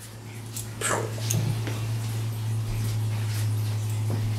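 A steady low hum with a few light clicks and knocks scattered through it as a person gets up from a chair and moves away.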